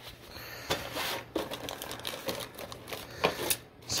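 A cardboard plastic-model kit box being opened and handled one-handed, with irregular rustling and crinkling of the plastic bags of parts inside and light clicks and knocks.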